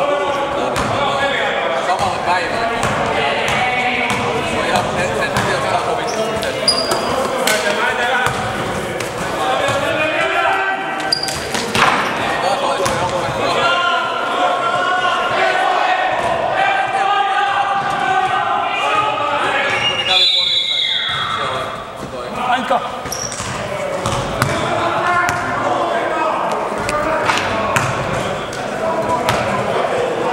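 Basketball bouncing on a sports-hall floor during play, with short sharp knocks scattered through. Indistinct voices chatter throughout, and everything echoes in the large hall.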